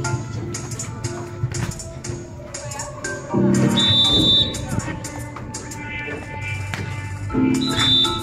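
Upbeat music with a steady percussion beat and tambourine-like rattles. A short, high, steady tone sounds twice, about four seconds apart.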